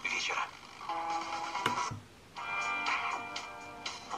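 Broadcast FM audio from a DIY RDA5807-based radio kit through its small loudspeaker as it steps between stations: a voice, then music, a click, and a brief silence about two seconds in while it retunes, then music from the next station.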